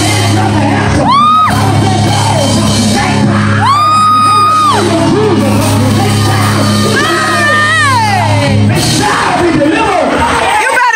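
Church praise and worship music: a steady low chord held under voices, with three long high-pitched vocal cries, each rising, held and then falling away.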